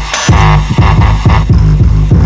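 Heavily distorted synthesizer bass holding low sustained notes, with a quick run of kick drums that drop in pitch played over it: a drum and bass bass line with its bass deliberately distorted.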